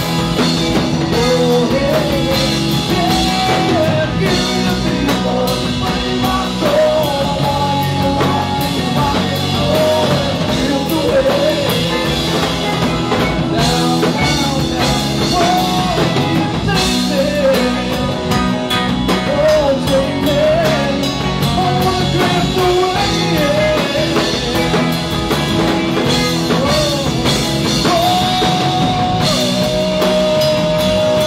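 Live rock band playing at full volume: drum kit, electric guitars and bass, with a man's singing voice carrying the melody over it.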